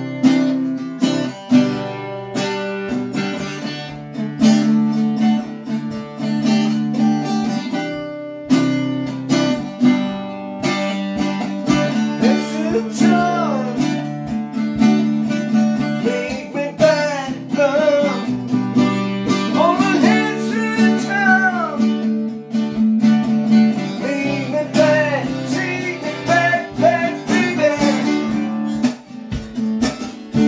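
Acoustic guitar strummed in a steady chord pattern, with a voice coming in over it about twelve seconds in, carrying a melody.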